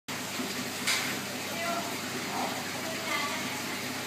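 Steady rushing water noise from an aquarium filter, with faint voices in the background and a sharp click about a second in.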